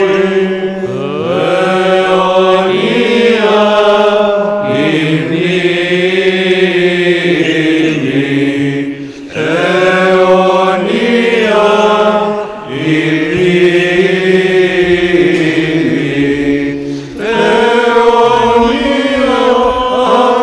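Unaccompanied Byzantine chant: voices singing a slow melody in long phrases over a steady held low note, broken by three short breaks.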